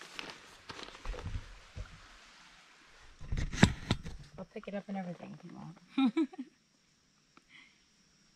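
Indistinct voices with a few knocks and a loud short clatter of handling noise close to the microphone, then a sudden drop to near silence at an edit.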